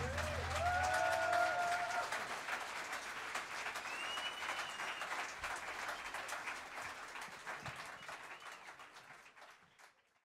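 Club audience applauding at the end of a song, with a few cheers in the first couple of seconds and a high whistle around the middle. The applause fades away steadily to near silence.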